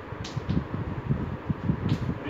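Chalk writing on a blackboard: uneven low knocks of the chalk against the board, with a few short scratches.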